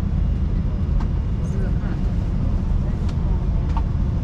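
Steady low hum inside the cabin of a parked Airbus A330-200, from its air-conditioning, with faint passenger chatter and a few light clicks.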